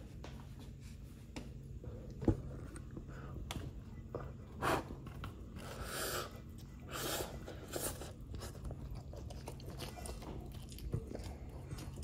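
A person chewing a mouthful of soft, mushy kimbap (seaweed-wrapped rice roll), with a few short mouth sounds and a sharp click about two seconds in.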